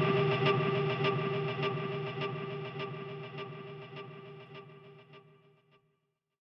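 Electric guitar music: a sustained chord ringing over an even pulse of just under two beats a second. It fades out steadily until it is gone near the end.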